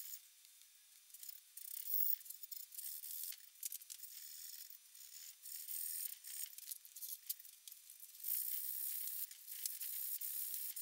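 Sandpaper rubbed by hand over a cherry hand-saw handle: short, uneven scratchy strokes, louder from about eight seconds in.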